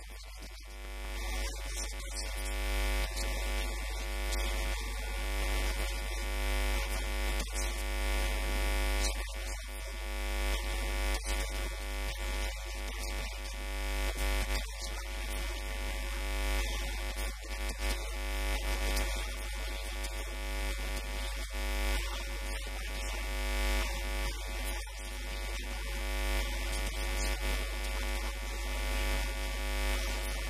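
Loud, steady electrical buzz with a deep hum and many overtones: interference picked up by the recording microphone, which swamps the interview audio.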